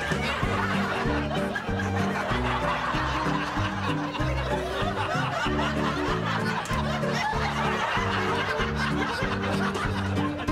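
Light comedic background music with a laugh track of audience chuckles and laughter over it.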